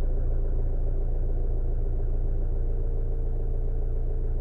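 A steady, loud low rumble with a faint even hum on top, unchanging throughout.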